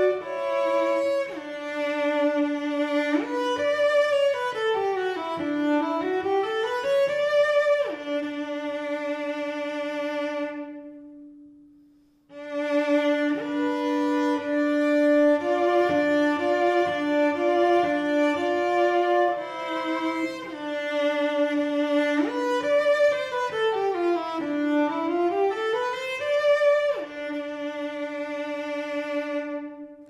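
Solo cello, bowed, playing the same pattern twice. First a major third double stop (D and F sharp) in just intonation, then a scale falling and rising in Pythagorean intonation, ending on a long note that fades out. After a short gap, a minor third double stop (D and F natural) and the same scale, ending on a held note.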